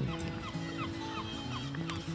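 Seabirds calling over the sea: a string of short, repeated calls over soft background music with long held notes.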